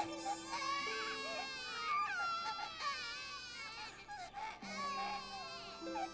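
Babies crying in an anime soundtrack, wavering wails over soft, sustained background music.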